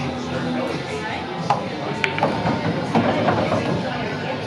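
Busy pool-room background: people talking and music playing, with two sharp clicks about a second and a half and two seconds in.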